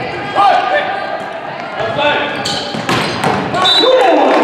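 A volleyball rally on a hardwood gym court: the ball is struck sharply a couple of times about two and a half and three seconds in, amid players' shouts.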